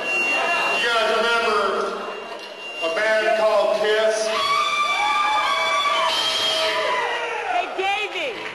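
Drawn-out, wordless shouts from a man's voice, with an audience cheering and whooping in a hall.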